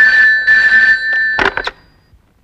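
A telephone ringing in a steady two-note electronic tone. About a second and a half in it stops, and a short clatter follows as the receiver is picked up.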